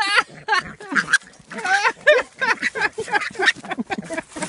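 An animal giving a rapid run of short, high-pitched cries, several a second, loudest at the very start.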